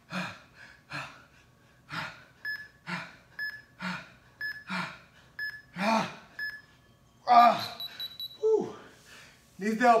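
A man breathing hard through push-ups, a forceful exhale with each rep about once a second. Over the middle of it an interval timer beeps once a second five times, then sounds a longer tone as the set ends, with a loud groan and a falling sigh from the man.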